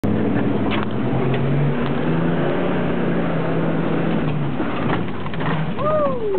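A Jeep's engine runs steadily under load on a steep rock slope, heard from inside the vehicle, and its note fades out about four and a half seconds in. Near the end a person's voice makes a drawn-out 'ooh' that rises and then falls.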